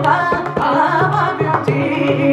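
Live Carnatic music: a mridangam playing frequent strokes under a wavering melodic line of voice and violin, over a steady electronic tanpura drone.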